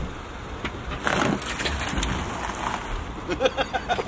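Small hatchback car driving down off a grass bank onto gravel, its tyres crunching over the gravel, with a run of short, quick pitched sounds near the end.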